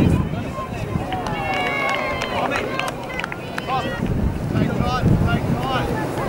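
Wind buffeting the camera microphone in low rumbling gusts, with faint distant voices calling across an open field.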